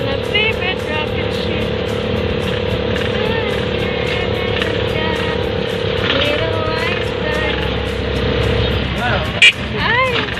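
Motorcycle tricycle running steadily along the road, heard from inside the cab as a constant engine and road rumble, with music with singing over it. A brief, very loud knock comes near the end.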